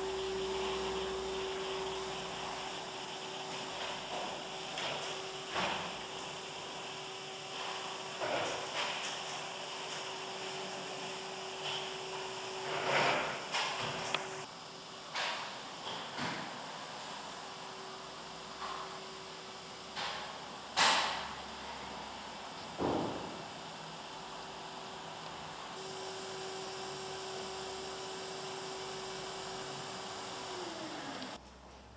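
A steady single-pitched hum under faint room noise, with scattered knocks and clicks, the loudest about two-thirds of the way through; near the end the hum dips in pitch and stops.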